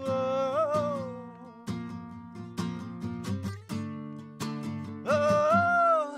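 Live acoustic guitar and a man's singing voice: a long held sung note at the start, strummed acoustic guitar chords for a few seconds, then another long sung note rising in near the end.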